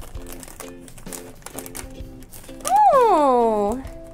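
A foil blind bag crinkling and tearing as it is opened by hand, over steady background music. About three seconds in, a voice gives one long exclamation that rises and then falls in pitch.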